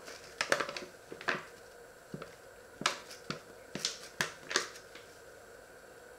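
Paper flour bag crinkling and crackling in irregular bursts as it is shaken to pour flour into a steel bowl, settling to quiet about five seconds in.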